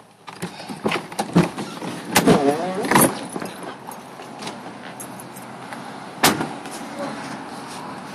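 Clicks, knocks and rustling as people get out of a parked car, with one sharp knock about six seconds in, then steady outdoor traffic noise.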